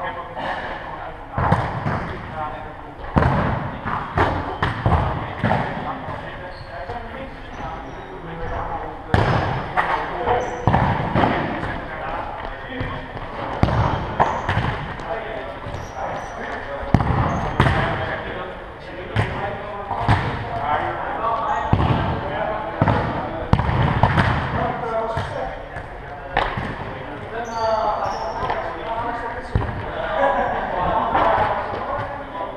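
Indoor football being played in a sports hall: the ball is kicked and bounces on the hall floor in repeated thuds that echo off the walls, mixed with players' calls and shouts.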